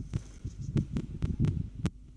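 Irregular dull thumps with about six sharp knocks in two seconds, the loudest near the end: handling of feed and gear at the back of a van beside a wooden feed trough.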